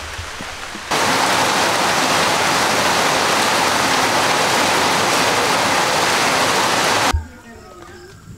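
Heavy rain pouring down, a dense steady hiss that starts abruptly about a second in and cuts off abruptly about a second before the end.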